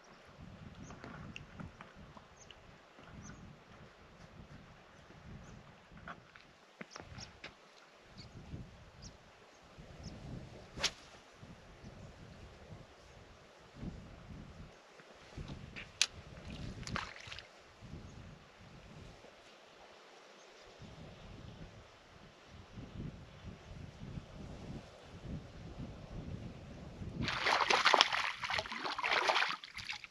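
Low, gusty wind rumble with a few sharp clicks, then, about three seconds before the end, a loud spell of splashing: a hooked trout thrashing at the surface close to the rock as it is brought in.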